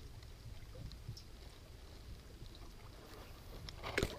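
Faint water sounds from a hand lowering a small smallmouth bass into the lake at the side of a boat, over a steady low rumble, with a short knock near the end.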